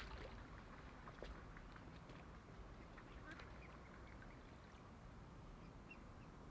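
Mute swan cygnets feeding in the shallows: faint, scattered clicks of bills working at the water and a few brief, soft calls, over a low wind rumble on the microphone.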